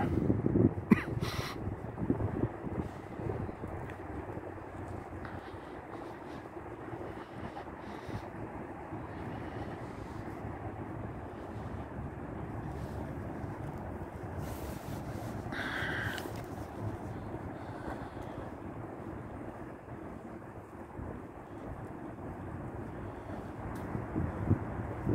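Steady hum of distant city traffic with light wind on the microphone; a crow caws briefly about sixteen seconds in.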